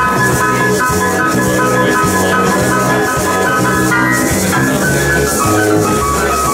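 Small jazz band playing live: keyboard notes on a Yamaha PSR-3000 over an electric bass line, with a steady hissing percussion rhythm on top.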